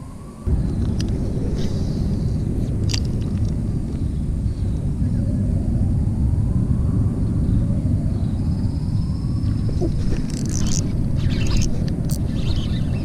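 Low, steady wind rumble buffeting the body-mounted camera's microphone, starting abruptly about half a second in. Over it a faint rising tone repeats about three times, and a few sharp clicks come near the end.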